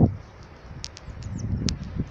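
Birds chirping outdoors, a few short high chirps spread through a pause in speech.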